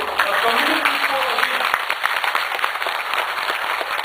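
Audience applauding, a dense steady clatter of many hands. A man's voice is briefly heard over it in the first second.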